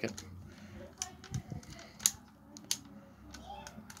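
A handful of sharp, separate plastic clicks and clacks, roughly one a second, as fingers work the head of a Transformers Masterpiece Grimlock figure, switching its eye gimmick back from red to blue eyes.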